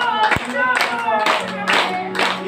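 A group of people clapping their hands in a steady rhythm, about two claps a second, over voices singing devotional songs together.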